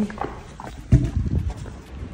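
Footsteps of sneakers on wet brick paving, with a heavier low thump about a second in.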